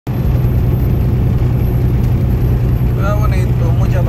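Steady low engine drone and road noise heard inside the cab of a truck cruising at highway speed. A man's voice comes in near the end.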